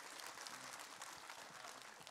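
Faint applause from a studio audience, an even patter of many hands clapping.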